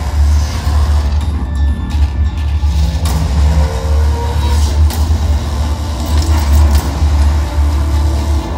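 Loud, bass-heavy show music over a venue sound system: a deep, steady low drone with a few sharp hits, heard through a phone's microphone in the audience.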